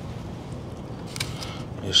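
Steady, fairly low outdoor background noise with a brief light click about a second in; a man starts to speak at the very end.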